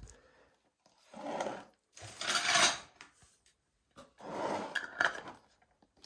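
Metal twist-off lids being screwed onto glass honey jars: three bouts of twisting, the middle one the loudest.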